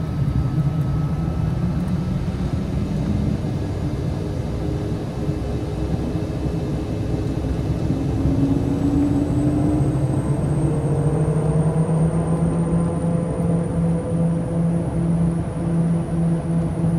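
The twin pusher Pratt & Whitney PT6A turboprop engines of a Piaggio P180 Avanti, heard from inside the cockpit, spooling up as power is advanced for takeoff. A steady drone whose tones rise in pitch and grow louder from about halfway through, with a faint high whine climbing slowly.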